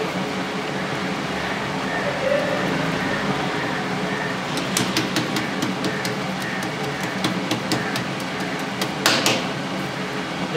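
Steady kitchen background noise, with a run of light clicks and pats in the second half as hands press and stretch bhatura dough on a marble counter, and a fuller rustle near the end as the dough sheet is lifted.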